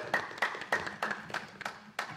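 Hand clapping right after a song ends: sharp, evenly spaced claps at about three to four a second from a small group.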